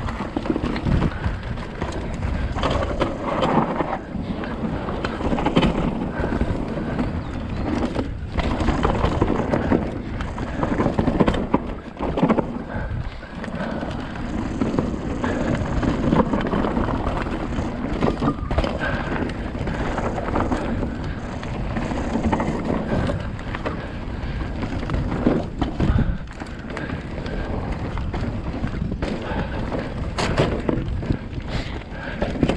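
Mountain bike riding down a dirt forest singletrack: knobbly tyres rolling and skidding over dirt and roots, with frequent knocks and rattles from the bike over bumps and wind buffeting the microphone.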